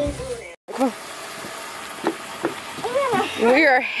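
Background music cuts off about half a second in; after a moment of silence, a steady hiss of outdoor background noise runs under a few short vocal sounds and then speech.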